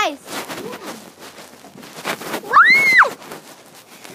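A child's single high-pitched scream, rising and then falling, about two and a half seconds in and lasting about half a second: a scared squeal.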